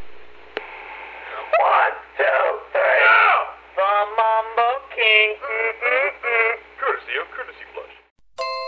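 A voice on a telephone answering-machine message, heard through the narrow, tinny band of a phone line with a low hum underneath. From about halfway through it stretches into drawn-out syllables.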